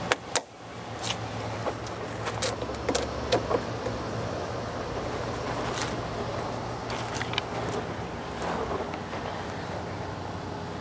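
Sharp crackles and pops scattered over a steady low hum as an overcharged LiPo battery pack fails and vents smoke inside a PVC containment tube. The pops come most often in the first four seconds.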